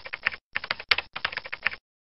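Computer-keyboard typing sound effect for text typing itself out on screen: three quick runs of rapid key clicks with short breaks between them.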